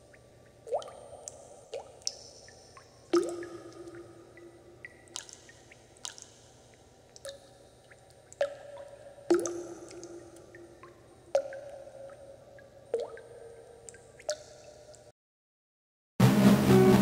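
Water drops falling one by one into water, about a dozen short plinks at irregular spacing, each bending in pitch. The dripping cuts off suddenly about a second before the end.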